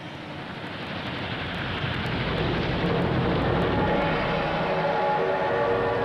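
Steam locomotive hauling a train, its running noise growing louder over the first couple of seconds and then holding steady, with several steady tones joining in from about halfway through.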